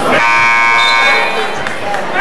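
Basketball scoreboard horn sounding once, a single steady buzz lasting about a second, over crowd chatter in the gym.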